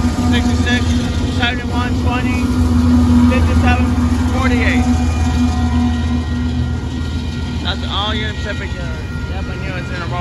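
Union Pacific diesel locomotives, the train's mid-train DPU set, passing close by at a grade crossing with a steady engine drone. The drone weakens about seven seconds in as double-stacked container cars roll past.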